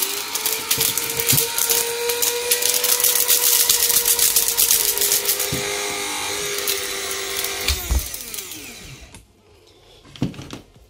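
Electric blade coffee grinder running at full speed, grinding small hard pieces of graphite-filled plastic, which rattle against the blade and cup. About eight seconds in the motor switches off and winds down, its pitch falling.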